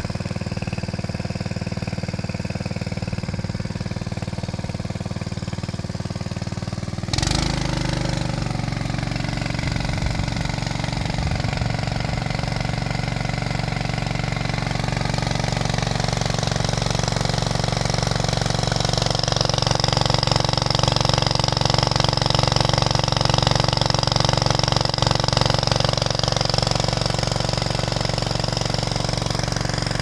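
Small petrol engine of a water pump running steadily, pumping water down the drill pipe of a hand-jetted borehole. About seven seconds in there is a knock and the engine note shifts slightly; from about two-thirds of the way through, a higher hiss grows over the engine.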